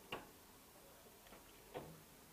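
Near silence: quiet room tone broken by two short faint clicks, one just after the start and one near the end.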